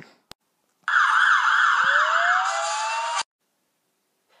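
Police sirens: a fast, repeating up-and-down wail with a second siren winding up in a steady rising tone partway through, both cut off suddenly about three seconds in. This is a dispatch of police units.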